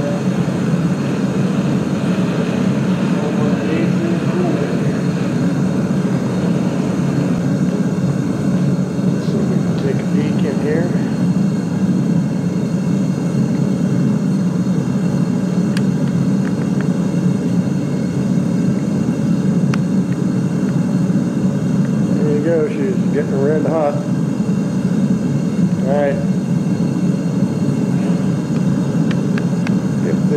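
Propane foundry burner running with a steady, even roar, fed at about 20 PSI, its flame swirling around the crucible as the melt heats.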